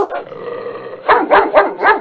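A dog barking: a quick run of about four barks starting about a second in.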